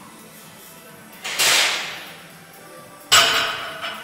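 A loaded barbell's iron plates set down on the gym's rubber floor: one sharp clank about three seconds in that rings on briefly. About a second in there is a forceful exhale from the lifter. Music plays in the background.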